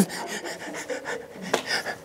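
A man laughing breathily, mostly breath with little voice.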